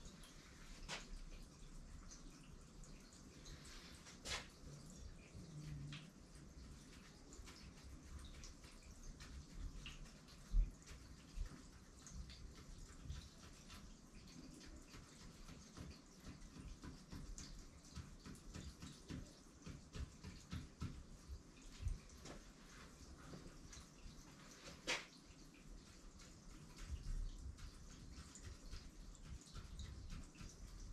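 Faint, scattered taps and scratches of an ink pen drawing tally marks on paper, with a few louder knocks and handling thuds in between.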